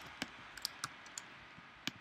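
About five sharp, separate clicks of a computer mouse and keyboard, irregularly spaced, on a low background.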